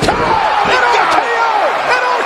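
Pro-wrestling broadcast audio: a noisy arena crowd with several sharp slam-like thuds.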